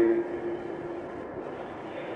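Steady hiss and rumble of an old, narrow-band tape recording, heard in a pause in a man's speech. A held tone fades out within the first second.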